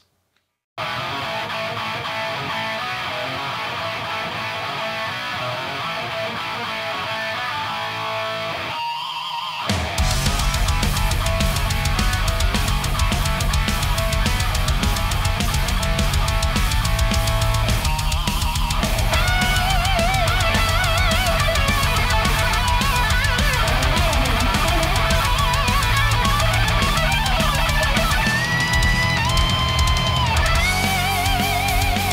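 Heavy metal full mix with distorted electric guitars through a Line 6 Helix Revv amp model: after a brief silence the guitars start, drums and bass come in at about ten seconds with a jump in loudness, and a melody line with vibrato joins a little before twenty seconds.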